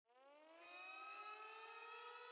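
Faint intro sound effect: a single tone that fades in, glides upward in pitch and levels off into a steady note.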